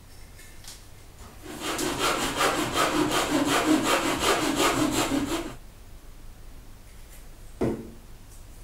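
Hand saw cutting into a scrap of wood in quick, even back-and-forth strokes, about four a second, for roughly four seconds, to make sawdust for a sawdust-and-glue gap filler. A single short knock follows near the end.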